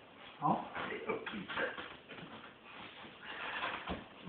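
A man's brief vocal sound about half a second in, then scattered handling and scraping noises from wooden ceiling panel boards being worked into place, with one sharp knock near the end.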